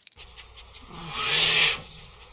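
An animal's breathy snort or sniff, a loud rush of air starting about a second in and lasting under a second, with a faint low wavering tone under it, laid on as the animated giant anteater's breathing.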